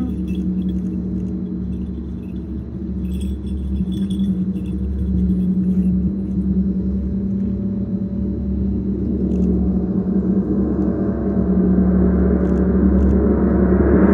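Low, continuous rumble of a large taiko drum being rolled, with a sustained low hum that swells steadily louder toward the end.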